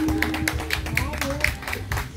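Instrumental backing track of a pop song playing through stage PA speakers, a fast, regular percussive beat with no singing over it.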